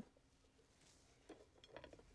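Near silence, broken by a few faint small metallic clicks in the second half, as a can opener is handled against a tin can.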